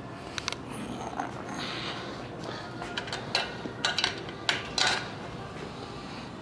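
A handful of short, light metallic clicks and clinks, several close together in the second half, from the motorcycle's key and handlebar controls being handled as the ignition is switched on.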